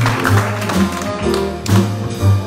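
Small jazz combo playing live: an upright bass walks a line of low notes under drum and cymbal strokes, with other instruments holding notes above.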